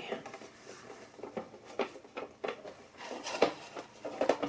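A sheet of paper towel rustling and crinkling as it is laid on a tabletop and smoothed flat by hand, with a handful of short rustles and light taps.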